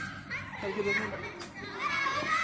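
Indistinct background voices with children's chatter, no words clear.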